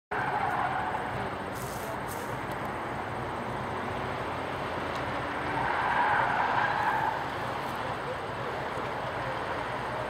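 A car engine running on an open autocross course, with a swell in level about six seconds in.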